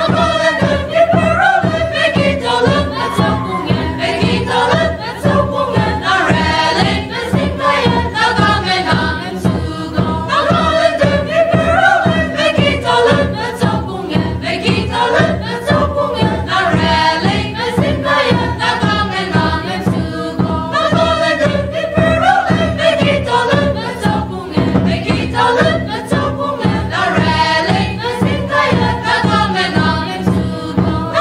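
A group of voices singing a Naga folk song together, with a steady rhythmic beat running underneath.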